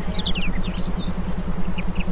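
Meditation backing track: a low tone pulsing rapidly, about twelve times a second, over a steady low rumble, with short high chirps that fall in pitch.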